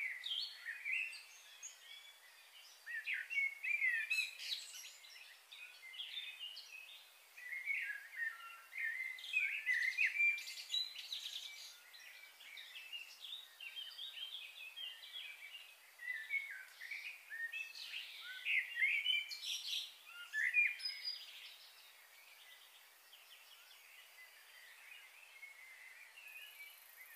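Small birds chirping in three long bouts of quick, high calls, with quieter stretches between them.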